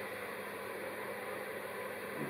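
Steady background hiss of room noise with a faint low hum, and no distinct sound event.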